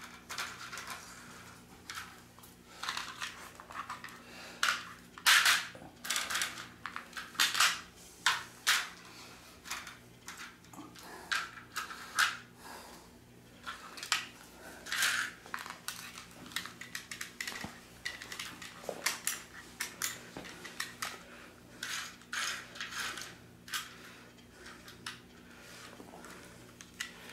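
Irregular clicking and clattering of small plastic HO slot cars and track as they are handled and nudged along the track, over a faint steady low hum.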